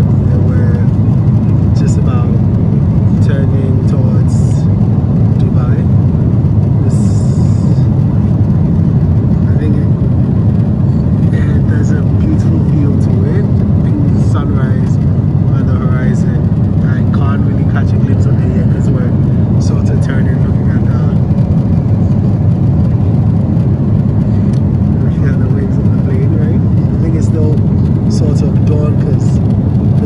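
Airliner cabin noise in flight: a steady, loud, low roar of engines and airflow heard from a window seat, with faint voices in the background.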